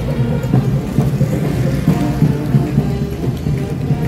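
Marching band playing a tune: brass over drums.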